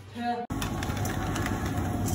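A wheeled plastic shopping basket pulled across a tiled supermarket floor, its small wheels making a steady rumble over the tiles. A short snatch of voice comes just before, and the rumble cuts in abruptly about half a second in.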